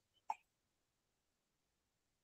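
Near silence in a pause of video-call audio, broken once by a very short, faint sound about a third of a second in.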